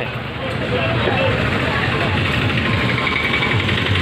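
Busy market street ambience: a steady rumble of street and vehicle noise with scattered voices of passers-by.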